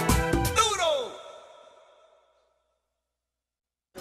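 A song with a steady beat cuts off on a final note that slides down in pitch and fades out over about a second and a half, followed by silence for the last two seconds.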